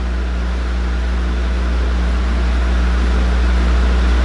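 Steady low hum with an even hiss behind it, holding level throughout, with no other event.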